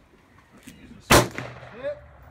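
A single handgun shot, loud and sharp, a little after a second in, with a short echo trailing off.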